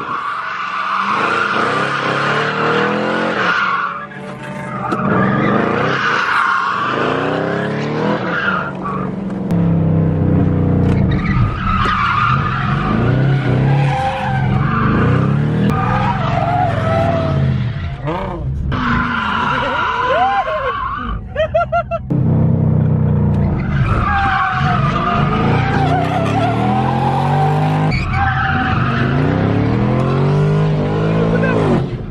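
Chevrolet Camaro drifting on a track, heard from inside the cabin: its tyres squeal in long stretches with a few short breaks, while the engine revs rise and fall.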